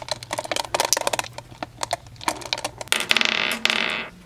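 Small aura rose quartz spheres clicking against each other and the plastic drawer as a hand picks through them: a string of sharp clicks, with a denser rattle for about a second near the end.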